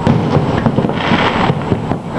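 Fireworks going off: a dense, irregular run of many small bangs and crackles.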